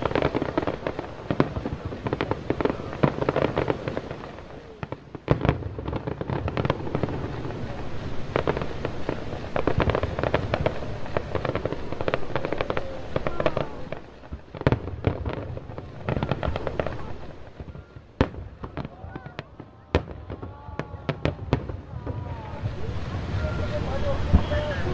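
Fireworks display: aerial shells bursting in quick succession with booms and crackle, in a dense barrage that thins to scattered sharp pops about three quarters of the way through, then builds again near the end.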